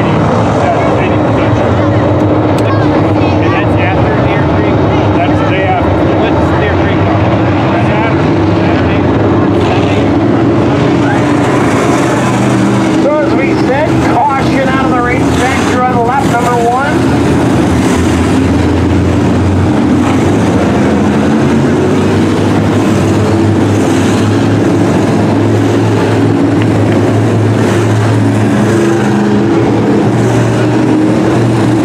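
A field of IMCA Sport Mod dirt-track race cars running their V8 engines hard at racing speed as the pack passes. The engine noise is loud and continuous, with many engines layered and rising and falling in pitch as cars go by.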